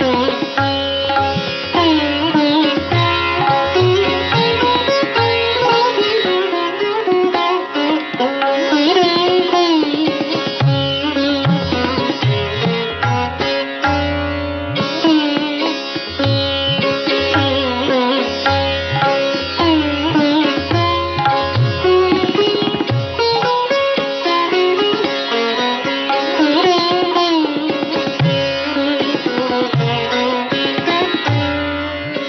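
Sitar playing a Masitkhani gat, a slow-tempo composition, worked with fikras: rhythmic phrases of the right-hand strokes da and ra set to different beat patterns. Plucked notes ring over the drone strings, with pitch glides between them.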